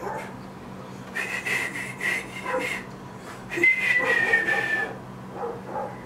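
A dog whining twice in a high pitch: one steady whine about a second in, then another about three and a half seconds in that slides slightly down.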